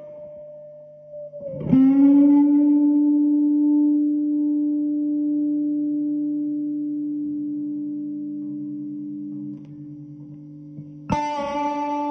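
Les Paul-style electric guitar played through an amplifier: a note struck about two seconds in is left to ring, fading slowly over several seconds, and a second note is struck near the end.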